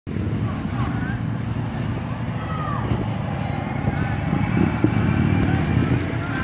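Steady low outdoor rumble with distant shouting voices from a protest crowd.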